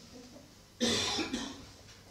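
A person coughing: one loud cough about a second in, with a second, shorter cough right after it.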